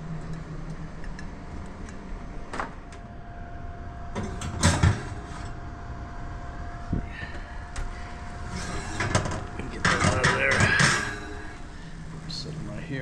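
Oven being loaded and unloaded: a click, then a loud clunk of the oven door and rack a little before five seconds in, and a steady hum from the open oven. Near the end comes a clattering scrape of a ceramic baking dish on the metal oven rack.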